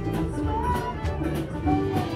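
A live band playing, with fiddle, guitars and bass, a few held melody notes carrying over a steady low accompaniment.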